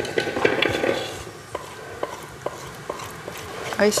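A wooden spoon scraping thick, set lemon-egg cream around the inside of a saucepan for about a second. Then comes a series of sharp, separate knocks of the spoon against the pan.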